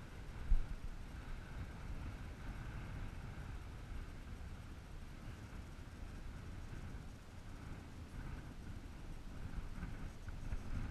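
Low, steady rumble of wind on the microphone over choppy water, with a single knock about half a second in.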